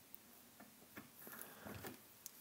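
Near silence with a few faint, light ticks of a small hex key and metal parts being handled at the hub of a drum pedal.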